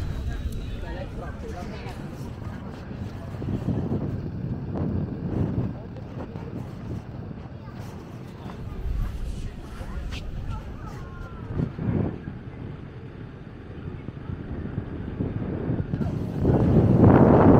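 Outdoor street ambience on a busy pedestrian promenade: indistinct voices of people walking by over a steady low rumble, with some wind on the microphone.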